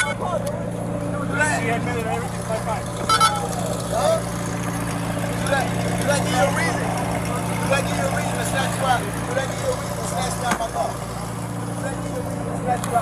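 A vehicle engine idling with a steady low hum, with indistinct voices in the background; the hum dips briefly near the end.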